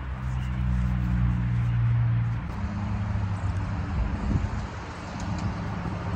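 Motor vehicle traffic: a steady engine hum over road noise, shifting in pitch about halfway through.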